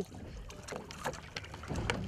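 Quiet wind-and-sea background on a boat at anchor: a low steady rumble of wind on the microphone and water, with a few faint knocks.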